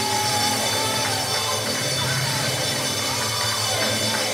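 Church praise music: a keyboard holding steady, sustained chords under the congregation.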